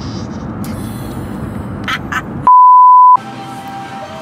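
Steady road rumble inside a moving car, then a single loud electronic bleep: one steady tone about two-thirds of a second long, with all other sound cut out under it, as in a censor bleep. After it comes a quieter room background with a faint steady hum.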